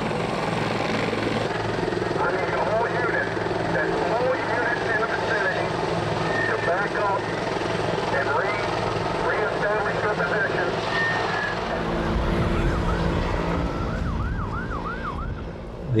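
Emergency vehicle sirens wailing, with a quick rising-and-falling yelp several times a second near the end, over many overlapping voices. A low rumble comes in for the last few seconds.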